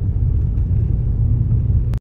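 Steady low rumble of a moving car, heard from inside the cabin: engine and tyre-on-road noise while driving at low speed.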